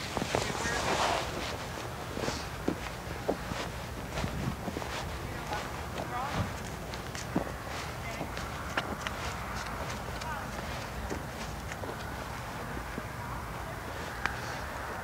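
Footsteps and a horse's hooves at a walk on soft dirt arena footing: faint, irregular thuds and clicks over a steady outdoor background.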